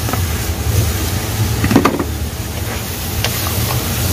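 Dry rice poured from a plastic container into a hot aluminium pot of sautéed onion and tomato, the grains hissing down onto the food as it sizzles, over a steady low rumble.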